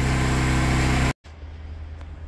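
A steady, even-pitched low mechanical hum that cuts off abruptly about a second in. A much fainter low hum follows.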